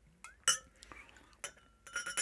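Steel bar jigger clinking against glass: one ringing clink about half a second in, a few light knocks, then more clinks near the end as the jigger is tipped over a tall glass.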